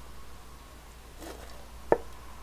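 A single sharp click just before the end, over a faint steady hum.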